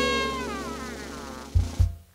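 The end of a swing song: the band's final held chord fades while a sung note wavers and slides down in pitch. Near the end come two low drum thuds close together.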